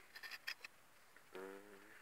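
A few faint, sharp clicks of small old coins knocking together as they are handled in the fingers, in the first half-second or so. Near the end comes a man's brief drawn-out hesitation sound.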